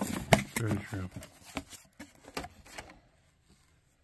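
Cardboard shipping box being opened by hand: the flaps are pulled apart and the cardboard rustles and crackles in a quick run of sharp scrapes and clicks over the first couple of seconds, then the sound dies away.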